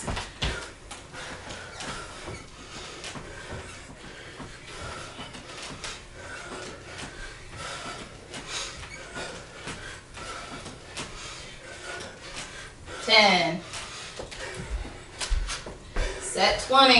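Two people breathing hard through a set of bodyweight squats, with faint short puffs of breath. A short, loud voice sound comes about thirteen seconds in.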